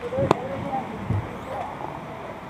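Background chatter of people, with one sharp knock about a third of a second in and a dull thump about a second in.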